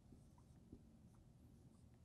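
Faint strokes of a marker writing on a whiteboard: a few short, soft scratches over quiet room tone, the clearest about a third of the way in.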